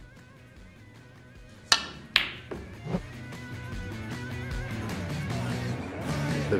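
Snooker balls struck on the table: a sharp click about 1.7 s in and a second one half a second later, then a couple of fainter knocks. Background music runs underneath and grows louder through the second half.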